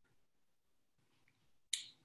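Near silence, then a single short, sharp click-like sound near the end that dies away within a fraction of a second.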